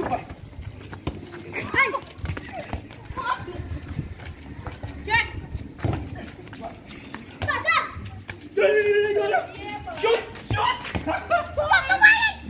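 Children's voices calling and shouting to each other while playing street football, with one longer drawn-out shout about three-quarters of the way through. Short knocks, like the ball being kicked, come here and there.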